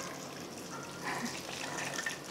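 Rum pouring from a glass bottle in a thin stream onto chopped dried fruit in a steel bowl: a steady, quiet trickle.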